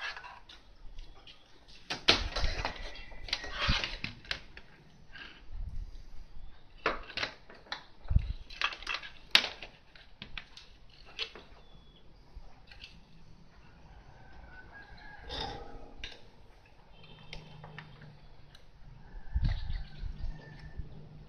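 Scattered clicks and light knocks of a bare glass light bulb on test leads and loose wires being handled over a TV circuit board. A short animal call sounds about fifteen seconds in, and a dull thump near the end.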